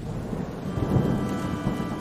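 A low, noisy rumble like thunder, with faint held musical tones beneath it, opening a sombre version of a song.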